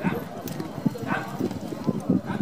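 Hoofbeats of a two-horse carriage team moving fast over turf and loose sand, a quick, uneven run of dull thuds.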